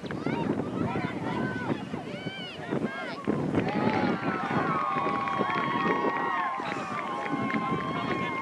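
Overlapping shouts and calls from many voices across an open soccer field, players and spectators calling out, some calls held for a second or more.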